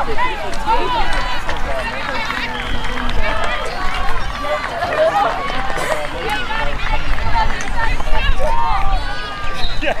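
Many voices calling and chattering at once, distant and overlapping, from girls' lacrosse players and people on the sideline, over a steady low rumble.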